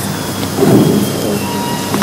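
Steady room ambience with a hiss and faint, indistinct voices in the background.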